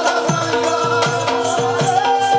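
Live devotional folk music: a man's voice sings or chants a bending melody over a steady drum beat, with a held drone and jingling rattle percussion.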